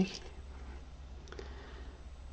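Quiet room with a steady low hum and a single faint click a little past halfway, from small hand handling while a needle is threaded with a needle threader.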